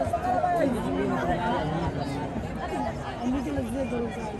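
Several spectators talking and calling out over one another close to the microphone, unbroken chatter with no single voice standing out.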